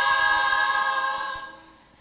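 Choir, mostly women, singing a cappella, holding one long chord that fades away over the second half.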